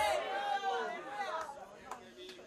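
Several voices of a congregation praying aloud at once, quieter than the amplified preaching and dying down toward the end.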